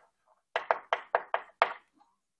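Chalk striking a blackboard while writing: six sharp taps close together in just over a second, as the strokes of a short label are written.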